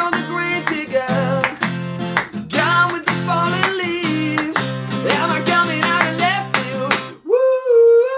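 Acoustic guitar strummed in a steady rhythm under a man's singing voice, with hand claps on the beat. Near the end the guitar stops and a single high note is held alone.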